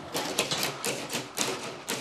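Metal-tipped draw wire being pushed through PVC conduit, scraping and clicking along the inside of the tube in an irregular run of sharp ticks, until it comes out into the back box.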